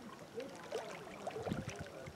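Small wind-driven waves lapping and splashing against the rocky lakeshore, with a soft low thump about one and a half seconds in; faint distant voices carry across the water underneath.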